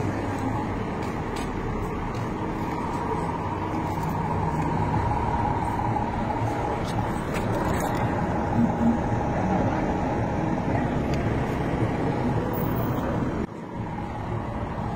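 Steady motor-vehicle road noise, a continuous rumble and hiss, that drops away suddenly shortly before the end.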